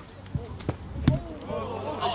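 A rugby ball kicked off the grass: a sharp thud about a second in, after two lighter thumps, followed by players shouting across the field.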